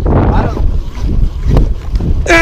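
Wind buffeting the microphone on a small open boat at sea, a steady low rumble with a faint voice in the first half second and a single knock about three-quarters of the way through.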